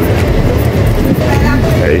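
Steady low engine and road rumble of a car driving on rain-wet streets, heard from inside the cabin, with a brief spoken word near the end.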